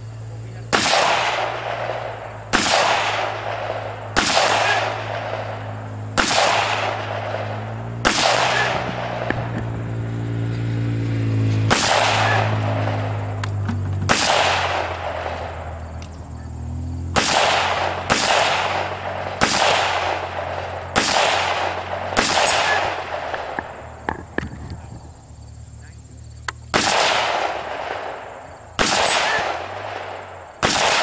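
Scoped AR-style rifle fired one shot at a time at distant steel targets, about fifteen shots spaced roughly one to two seconds apart with a few longer pauses, each shot trailed by a long rolling echo.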